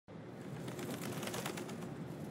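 Faint outdoor ambience with birds calling and small chirps throughout.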